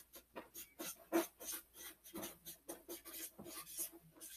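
Felt-tip marker writing on a white board: a quick run of short, scratchy strokes as words are written out.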